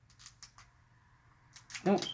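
Plastic wrapper of an L.O.L. Surprise ball being picked at and peeled by a child's fingers: a few short crackles in the first half-second, then quiet.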